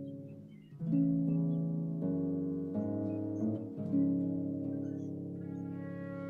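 Soft instrumental background music with plucked-string notes, each new note or chord starting sharply and fading, about one a second.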